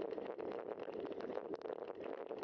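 Bicycle tyres rolling over a dirt trail: a steady crunching rumble with many small clicks and rattles throughout.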